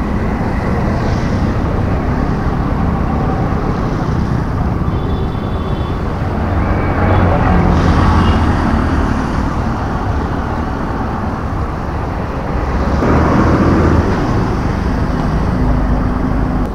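Steady road traffic noise from vehicles passing on a busy road.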